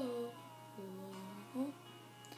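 A girl's singing voice: a sung note slides down and fades out within the first half-second, then she hums a quiet, steady lower note, with a short higher note near the end.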